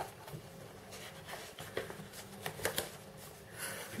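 Pages of a paper instruction booklet being turned and handled: faint rustling with a few light flicks of paper.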